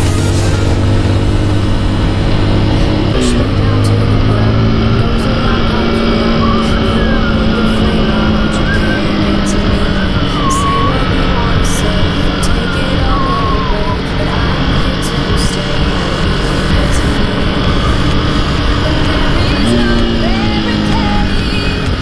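Motorcycle engine running on the road, its pitch rising and falling a few times as the revs change, with background music over it.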